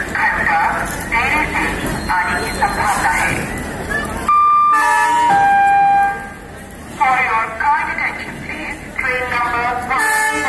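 Voices, broken about four seconds in by a loud, sustained railway horn lasting about two seconds, which steps from one note to a chord and then down to a lower note before the voices return.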